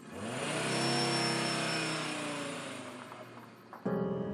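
A vehicle engine revving up as it pulls away, then its sound slowly falling in pitch and fading as it drives off, cut off abruptly near the end.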